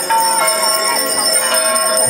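Small handheld altar bells rung continuously in a procession, a dense jingling shimmer of many high tones, with voices underneath.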